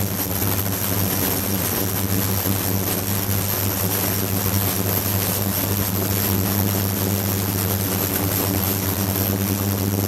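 Ultrasonic tank running, its transducers cavitating the liquid: a steady low hum with an even hiss over it.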